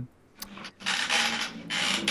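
A short sharp click about half a second in, then a second or so of rustling and rubbing from a person moving about and handling things, with no speech.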